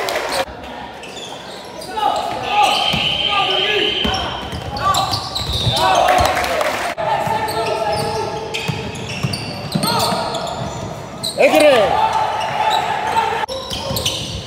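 Basketball game in an echoing sports hall: the ball bouncing on the court, short sneaker squeaks and players calling out. The sound breaks off abruptly twice as the footage jumps between clips.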